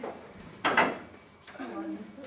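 A man's short, forceful breath about half a second in, as he strains through a pull-up, with a short bit of voice near the end.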